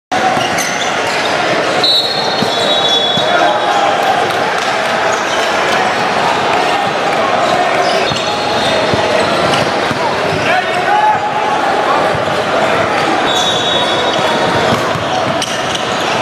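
Live basketball in a large gym: a ball bouncing on the hardwood court and sneakers squeaking, twice in longer bursts, over a constant hubbub of crowd and player voices echoing in the hall.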